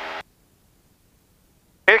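Near silence, with no engine or cabin noise heard: a voice trails off in the first moment and another phrase of speech begins just before the end.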